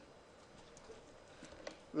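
Quiet room tone with a few faint computer mouse clicks.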